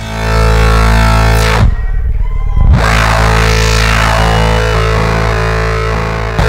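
Modular synthesizer playing a loud, sustained, layered drone. About one and a half seconds in a falling sweep passes through it, the high end cuts out for about a second, then comes back.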